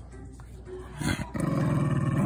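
A cocker spaniel growling over a slipper it is guarding. The growl is low and steady, starting about a second in and held continuously.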